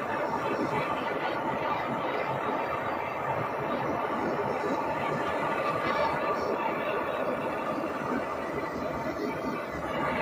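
Handheld propane torch flame burning steadily with an even rushing noise as it scorches bare wooden boards.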